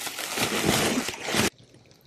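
Plastic bubble wrap rustling and crinkling as a hand digs through it in a cardboard box, stopping abruptly about a second and a half in.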